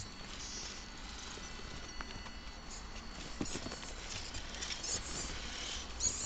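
Axial XR10 radio-controlled rock crawler creeping over rocks: a faint steady whine from its electric motor and gears, with scattered clicks and scrapes as the tyres grip and shift on stone.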